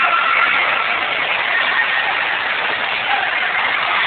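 Steady, even din of an indoor water park, with rushing water and many distant voices blended into one constant noise.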